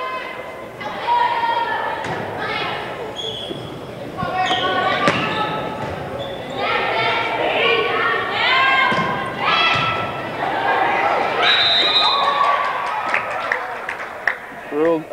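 A volleyball rally in a school gymnasium: the ball is struck and smacked several times. Players and spectators shout and cheer in high voices throughout, with long held calls late on, all echoing around the hall.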